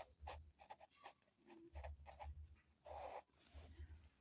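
Blue ballpoint pen writing on paper: a string of short, faint scratches as the letters of a word are drawn.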